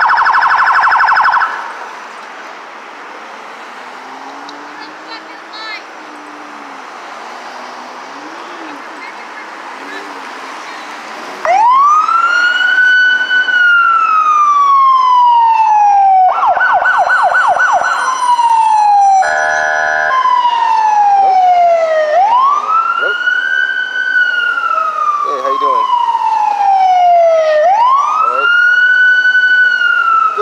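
Police cruiser's electronic siren. It gives a brief rapid warble right at the start, then from about a third of the way in a loud wail that rises and falls slowly, about once every five to six seconds. The wail is broken near the middle by a few seconds of fast pulsing.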